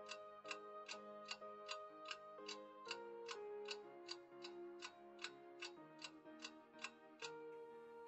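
Clock-ticking sound effect counting down a quiz's thinking time, about two and a half ticks a second over soft, quiet background music chords; the ticking stops shortly before the end.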